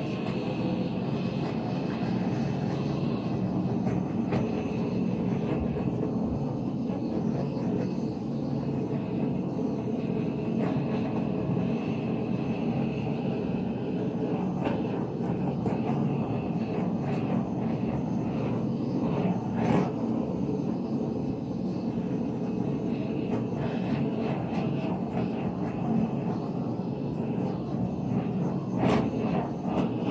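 Hand-held electric hot-air blower, of the hair dryer or heat gun kind, running steadily: a loud, even rush of air over a motor hum with a thin high whine.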